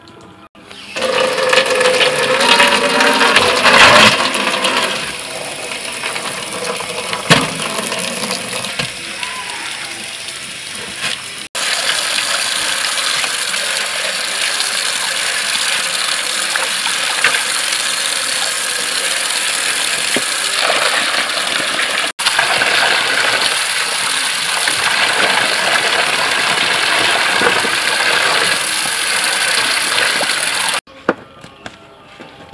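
Water running from a hose into a metal basin and splashing as whole red fish are rubbed and washed by hand. The sound is a steady rush that cuts out abruptly twice.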